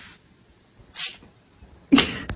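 A pet cat making three short, sharp, breathy sounds about a second apart, the last one the loudest.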